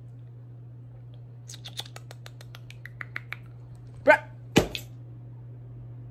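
Guinea pig gnawing on the bars of its cage: a quick run of small sharp clicks and rattles. Near the end come a short pitched sound and a single thump.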